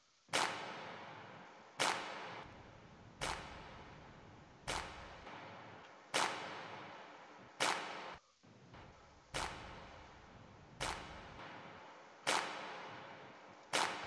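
A soloed drum-machine clap sample playing back in a mix session: ten sharp claps about one and a half seconds apart, each followed by a long decaying tail. It is played as a before-and-after comparison of an EQ boost around 1.7 kHz and added punch on the clap.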